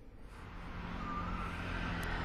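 Outdoor background noise of distant road traffic: a low steady rumble and hiss that fades up about half a second in, with a brief faint tone near the middle.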